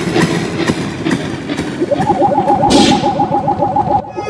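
Noisy electronic intro sound effects: a dense crackling texture with hits about twice a second, joined about halfway by a rapidly stuttering tone and a short whoosh.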